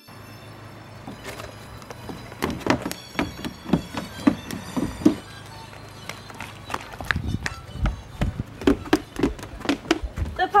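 Running footsteps in flip-flops, quick and regular at about three steps a second, over a steady hum. One run of steps comes a couple of seconds in and another near the end.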